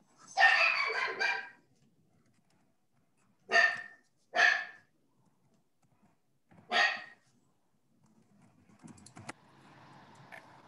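A dog barking, heard over a video call: a quick run of barks at the start, then three single barks spaced a second or more apart.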